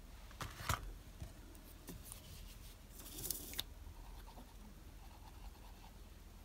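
Quiet handling of small card pieces and a glue bottle on a paper-covered desk: a short crackly rustle about half a second in and a longer scratchy rustle around three seconds in, over a faint steady low hum.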